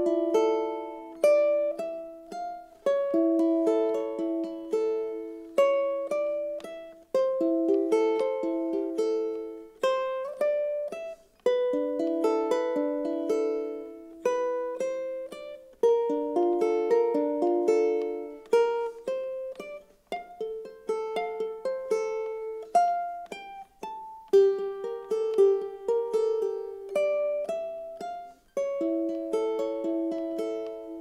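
Tenor ukulele played fingerstyle in a chord-and-melody exercise. Each chord is picked in a thumb, thumb, thumb, index pattern, then a short melody is played within the same chord shape. Plucked notes ring and die away in short phrases one after another.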